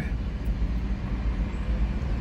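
Steady road traffic noise: a low rumble of cars driving past.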